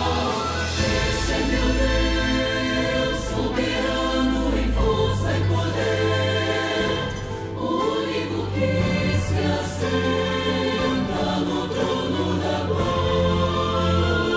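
Voices singing a hymn together in Portuguese, with sustained low instrumental notes underneath.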